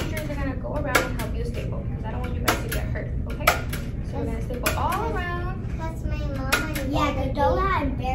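A desk stapler clacking through a folded paper plate, three sharp snaps in the first few seconds, closing a bead-filled maraca. Children's voices come in around the middle and near the end.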